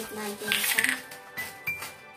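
Background music with a melody, and about half a second in a short gritty rattle of a seasoning shaker being shaken.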